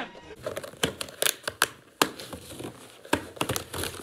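A cardboard wheel box being opened by hand: plastic packing straps and packaging crinkling and tearing, with a string of sharp, irregular snaps and crackles.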